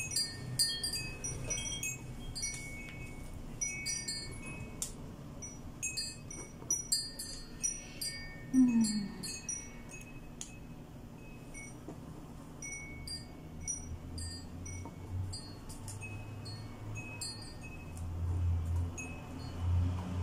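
High, irregular tinkling of wind chimes: many short ringing tones at no set rhythm. A brief low falling sound comes about eight and a half seconds in, and a low hum rises over the last few seconds.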